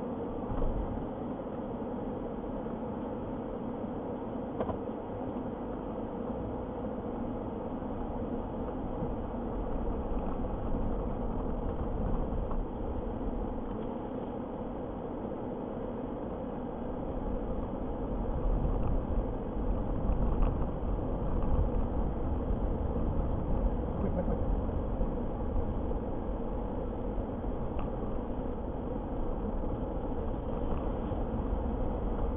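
A vehicle driving on a dirt road, heard from inside the cabin: a steady engine and road hum, with a deeper rumble that grows louder about halfway through.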